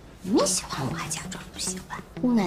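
Mandarin dialogue between two characters from a drama scene, over soft background music with a held low note.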